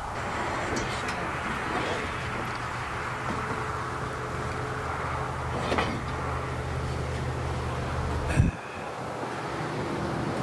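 A steady low mechanical hum with a rushing noise over it. It cuts off suddenly with a click about eight and a half seconds in, leaving a fainter, higher hum.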